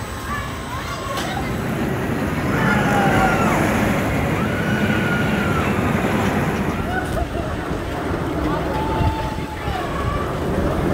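A steel roller coaster train rumbles along its track, swelling as it passes, while riders give several long, high screams over the rumble.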